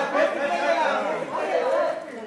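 Several people talking over one another in a lively chatter of voices.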